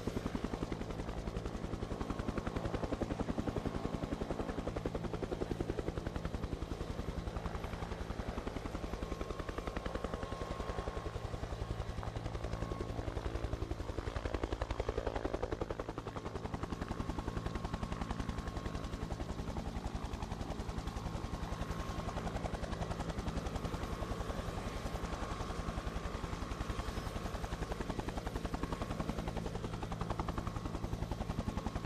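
Helicopter rotor chop and turbine noise, a steady rapid beat of blades over a low drone, dipping briefly about halfway through. It is a helicopter sound effect added by the broadcaster over the aerial pictures, not the live sound of the aircraft.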